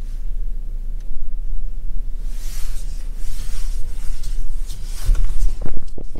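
Cabin sound of a 2020 Hyundai Santa Fe pulling away: a steady low rumble from engine and road, with a hiss that swells about two seconds in and fades, and a few knocks and a heavy thump near the end.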